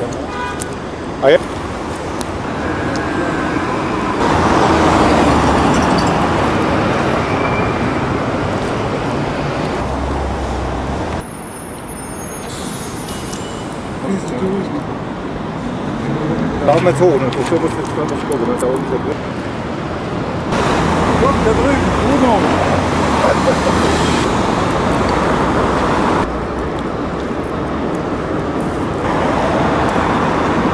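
City road traffic: a steady wash of passing cars, with voices now and then. The sound changes abruptly several times where shots are cut together.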